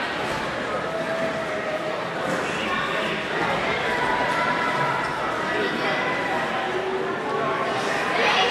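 Several voices talking and calling out at once, overlapping and indistinct.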